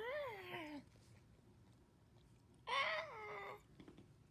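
A cat meowing twice: two drawn-out meows, each rising and then falling in pitch, the second coming about two and a half seconds after the first.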